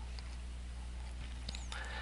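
Steady low electrical hum with faint hiss in the background of a voice recording, with a couple of faint clicks.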